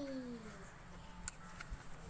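A young child's voice trailing off at the end of a drawn-out word, sliding down in pitch in the first half-second, then faint background noise with a single light click.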